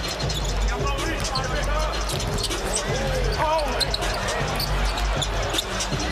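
A basketball being dribbled on a hardwood court during live play, with voices in the background.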